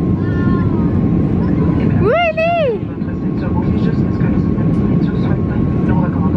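Steady low rumble of an airliner cabin, the engines and airflow heard from a passenger seat, with a faint steady hum over it. A brief high voice rises and falls about two seconds in.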